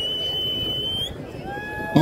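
A high whistle held steady for over a second, then a shorter, lower tone near the end, over the low murmur of a crowd.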